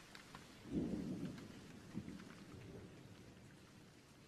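A low rumble swells about a second in and dies away over the next two seconds, with a second short thump near the two-second mark, over a faint patter.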